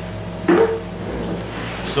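Handling noise as the recording camera is touched and moved at close range: rubbing and light knocks, with a short voiced grunt about half a second in and a sharp click near the end.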